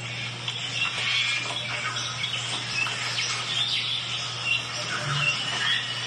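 Birds chirping and singing, many short overlapping calls, over a faint steady low hum.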